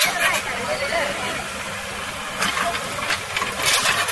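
An engine running steadily with a low hum, under people's voices calling out, with a few sharp noisy bursts about two and a half seconds in and again near the end.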